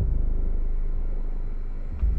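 Deep, ominous rumble from a TV drama's soundtrack. It swells at the start, fades slowly, then hits again at the very end.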